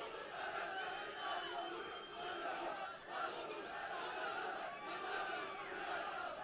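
A large rally crowd shouting and cheering, many voices overlapping at once, with a few thin high whistles.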